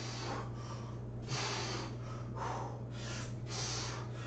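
A man breathing hard from the effort of weighted squats: forceful breaths in and out, about one a second, over a steady low hum.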